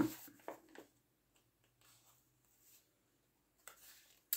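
Mostly near silence, with a few faint, brief handling sounds about half a second in and again near the end: fingers picking at the tape on a paper chip bag to prise it open.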